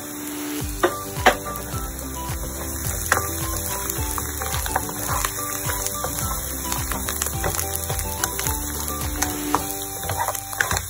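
Background music with a steady beat over pork ribs sizzling in a nonstick wok as they are stir-fried with a plastic spatula, which knocks against the pan a few times in the first three seconds.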